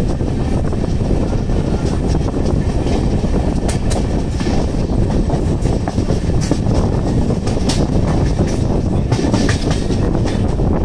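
A passenger train coach running at speed, heard from its open door: the wheels on the rails make a steady, loud rumble with scattered sharp clicks.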